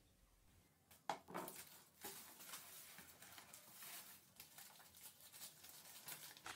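Very faint rustling and crinkling of shredded paper and newspaper wrapping being handled, with a light click about a second in.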